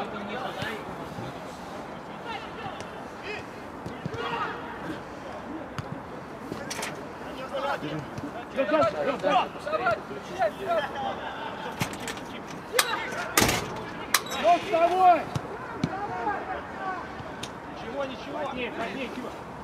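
Footballers shouting to each other on an outdoor pitch, with a few sharp thuds of the ball being kicked. The loudest thud comes about halfway through.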